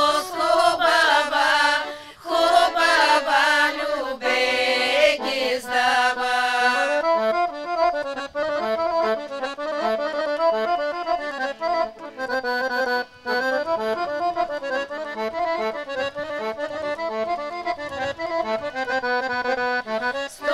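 A women's group sings a Bulgarian folk song in the authentic village style for about the first seven seconds, with accordion underneath. The accordion then plays on alone as an instrumental interlude to the end.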